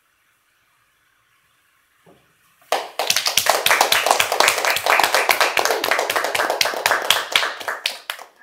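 A couple of seconds of near silence, then a small audience breaks into applause, dense clapping that starts about three seconds in and runs on, thinning near the end.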